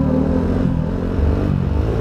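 Snow bike engine running under way: a dirt-bike motor on a Timbersled track kit. Music is fading out at the start.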